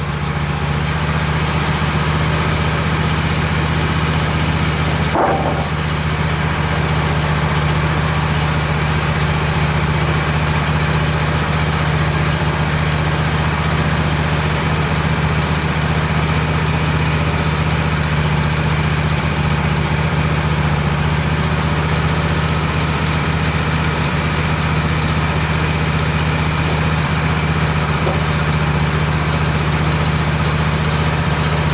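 Wood-Mizer LT15 portable sawmill's engine idling steadily while the saw head stands still between cuts.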